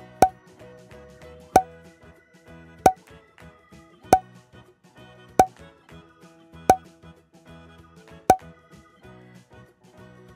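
Seven short cartoon pop sound effects, one about every 1.3 seconds, over light background music.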